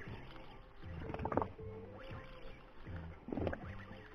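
Daido Ocea SW 4000 spinning reel being cranked to wind in line: a faint, low whirr that comes in short, even pulses about one and a half times a second as the handle turns.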